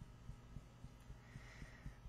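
Faint, soft thumps of fingertips tapping on the collarbone point in EFT tapping, about four a second, over a low steady hum.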